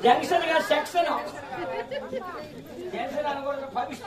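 Speech: actors speaking stage dialogue, louder in the first second and again near the end.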